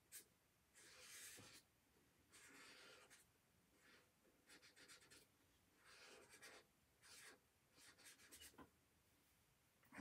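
Faint strokes of a felt-tip marker drawing on sketchbook paper: a series of short scratchy swipes, each about half a second, with pauses between them.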